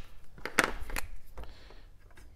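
A few sharp clicks of a marker being uncapped and handled, then a faint scratchy rub of a fine-point felt marker writing on a metal blade.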